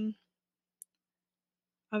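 A voice trailing off, then near silence broken by a single short, faint click about a second in, before the voice starts again at the very end.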